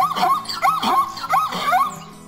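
Zebra calling: a quick series of about five yelping, bark-like notes, each rising then falling in pitch, over background music.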